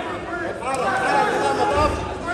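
Several overlapping voices talking and calling out at once: indistinct crowd chatter around a cageside MMA fight.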